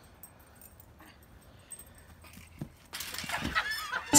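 Faint for about three seconds, then a few short honking animal calls that glide up and down in pitch near the end.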